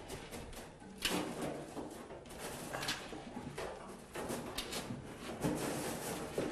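Old wiring harness being pulled out through a 1963 VW Beetle's body: the bundled wires drag and scrape against the sheet metal in several rough pulls.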